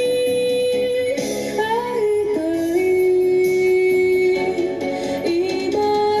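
A young woman singing a Shōwa-era kayōkyoku song into a microphone over instrumental accompaniment. The melody moves in long held notes that step up and down every second or two.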